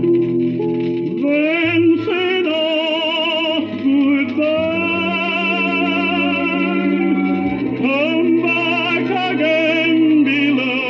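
Music from a 1947 Columbia 78 rpm shellac record of a tenor with orchestra, playing on a record player: sustained notes with wide vibrato over changing chords.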